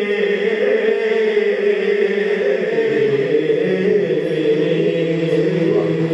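A man singing an Urdu naat into a handheld microphone in long, drawn-out held notes, with lower sustained notes coming in about halfway through.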